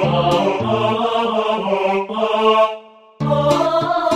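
A MIDI-file arrangement of a pop song played on General MIDI sounds: synthesized choir voices over bass and a steady drum beat. The bass and drums drop out about two seconds in, the music almost stops for a moment, and the full band comes back in near the end.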